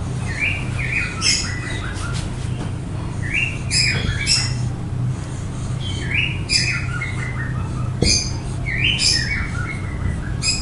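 A bird calling: a phrase of quick chirps that step downward in pitch, repeated four times at intervals of about two and a half seconds, over a steady low hum.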